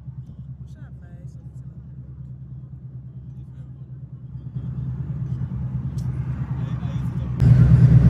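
Road and engine noise heard inside a moving car's cabin: a steady low rumble that grows louder from about halfway through and jumps up sharply near the end.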